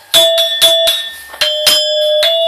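Bronze keys of a Balinese gamelan metallophone struck in a quick run of about six notes, each ringing on like a bell. After a short break about a second in, the notes fall on a slightly lower pitch.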